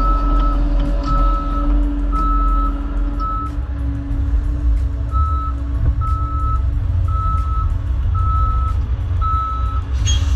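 Backup alarm beeping about once a second, with a short break near the middle, over the low rumble of heavy equipment running.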